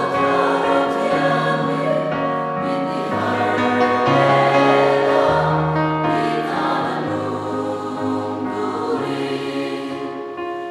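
A large congregation singing a hymn together with keyboard accompaniment, many voices holding long notes over sustained bass notes that change every second or two.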